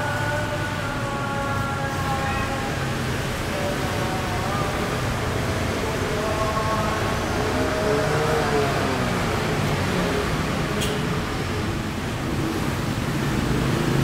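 Steady street noise, mostly passing traffic, with faint voices over it.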